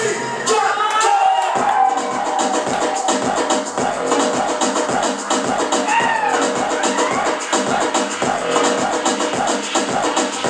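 Dance music with a steady beat of about two strokes a second, with a melody line sliding up and down in pitch about a second in and again around six seconds.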